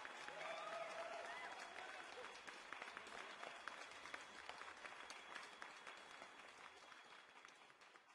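Faint, sparse applause of scattered hand claps that gradually fades away toward the end. A voice is heard briefly near the start.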